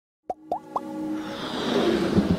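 Animated logo intro sound effect: three quick pops, each gliding up in pitch, followed by a rising whoosh that builds over musical tones.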